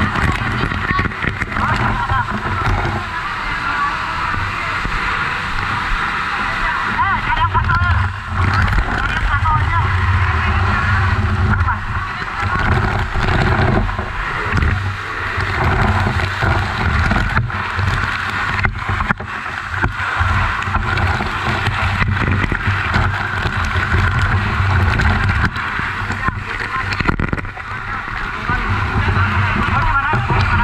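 Water from a fire hose spraying and splashing at close range, a steady rushing hiss, over a steady low rumble, with voices in the background.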